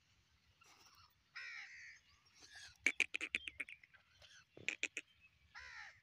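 Caged francolin (teetar) giving harsh calls: a single call, then a fast run of loud sharp notes about halfway through, a few more notes shortly after, and another call near the end.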